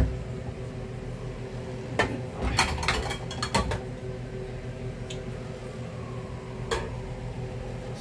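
Kitchen exhaust fan running with a steady hum, with clinks of metal utensils against dishes about two seconds in, a quick run of them just after, and one more near the end.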